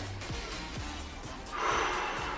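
Background music with a steady beat; about one and a half seconds in, a woman takes a deep, audible breath.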